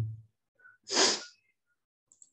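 One short, sharp breath noise from a person close to the microphone, about a second in, lasting about half a second.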